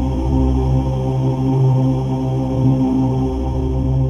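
Intro music: a sustained low drone of steady held tones.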